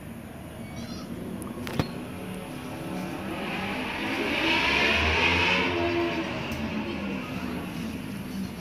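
A road vehicle passing by, growing louder to a peak about five seconds in and then fading away. A single sharp click just before two seconds in.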